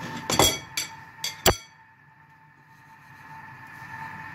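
A metal fork clinking against a ceramic bowl of beaten egg about four times in the first second and a half, the last clink the loudest.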